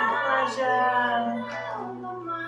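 A voice singing long held notes over background music, fading a little near the end.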